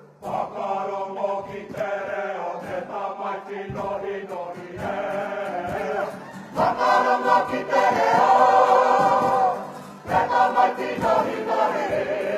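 Kapa haka group, women's and men's voices together, singing a Māori waiata in unison. The singing grows louder about halfway through and breaks off briefly near the end before going on.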